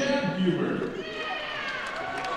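Indistinct voices talking, louder in the first second and then fading back into a murmur.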